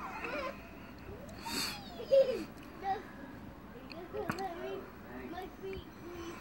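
A child's voice calling and squealing, without clear words, in short scattered outbursts; the loudest is a short high cry a little after two seconds in. A brief rushing noise comes about one and a half seconds in.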